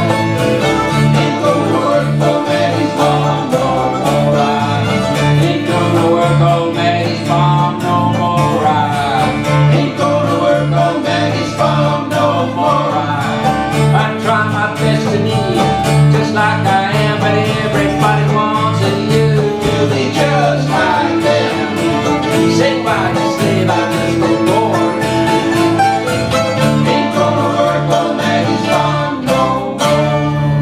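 Old-time string band playing live: fiddle, acoustic guitars and plucked strings over an upright bass that keeps a steady alternating beat.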